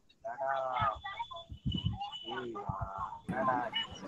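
Faint background voices picked up by an unmuted participant's microphone on a video call, with a brief high tone near the middle.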